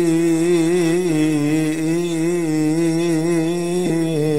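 Coptic liturgical chant: a man's voice holding one long, wavering melismatic note without a break.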